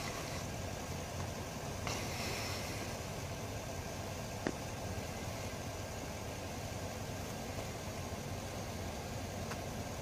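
Steady low hum of an idling vehicle engine under a constant background hiss, with a single sharp click about four and a half seconds in.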